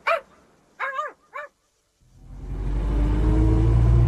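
A dog, an Irish terrier, gives three short barks in the first second and a half. After a sudden break, a car engine fades in and runs steadily.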